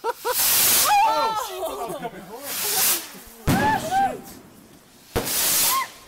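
Three consumer fireworks going off in quick succession, near the start, about three and a half seconds in and about five seconds in. Each is a sudden bang followed by up to a second of rushing noise.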